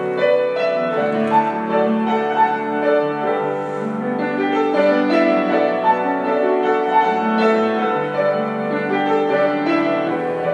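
Piano playing sustained chords with single notes struck above them, in a classical style.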